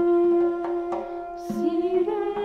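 Armenian folk music from a trio of duduks: a sustained held note over a steady drum beat. Near the end a woman's voice comes in singing.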